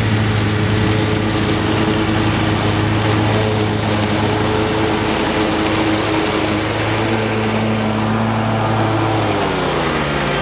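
Wright ZK stand-on mower running steadily as it cuts through tall grass, its engine note sliding down in pitch near the end.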